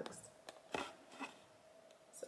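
Faint handling noise of a cardboard shoebox: a few short, quiet taps and rustles, around half a second and a second in.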